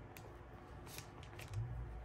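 Washi tape being unrolled and pressed down onto a paper planner page: faint rustling of paper and tape with a few light ticks.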